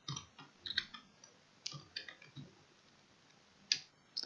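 Light, irregular clicks of a computer keyboard being typed on, with short pauses between bursts of keystrokes and a few separate clicks.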